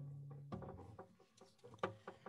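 Faint handling of an acoustic guitar as it is taken up: light wooden knocks and rustling, with a low steady tone that stops about half a second in.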